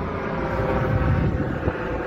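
Wind on the phone microphone over the steady rumble and hum of road traffic outdoors.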